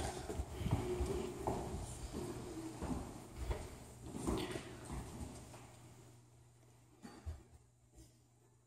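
Footsteps and stepping on a floor: irregular low thumps, with some sharper hits, that fade out after about six seconds, then two knocks near the end.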